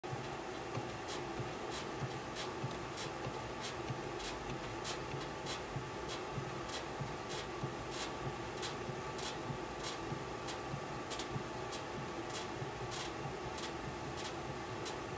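DeMarini bat being turned by hand between the rollers of a bat-rolling machine during a heat roll, with a short scratchy tick about one and a half times a second as it rolls. A steady faint hum runs underneath.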